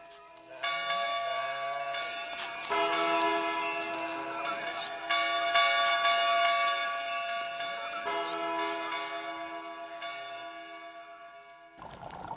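Bell-like chimes in a piece of music: ringing chords struck four times, each sustaining and slowly dying away, the whole fading out near the end.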